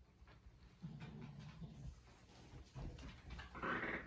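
A kitten calling: a low, quiet call about a second in, then a louder meow just before the end.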